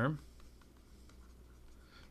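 Faint scratching of a stylus writing a word by hand on a tablet.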